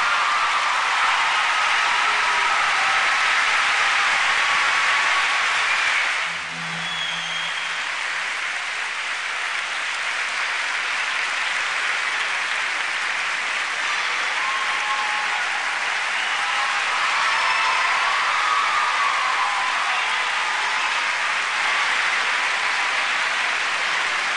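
Large arena audience of a few thousand applauding steadily, a dense continuous clapping, with a brief dip in level about six seconds in.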